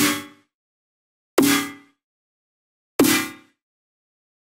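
Snare drum sample processed through Ableton's Corpus resonator, set to its metal plate model with the material turned low: three hits about a second and a half apart. Each is a sharp crack followed by a short metallic ring of about half a second, with its strongest tones low.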